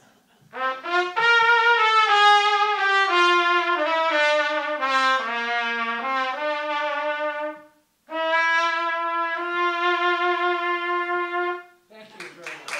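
A cornet played solo: a melodic phrase of several notes that steps down in pitch, a short break for breath about eight seconds in, then a second phrase of long held notes.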